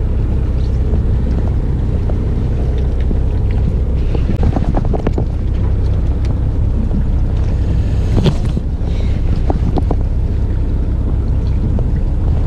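Steady low rumble of a small fishing boat's engine with wind buffeting the microphone. A few short knocks and clicks come about four to five seconds in and again near eight seconds.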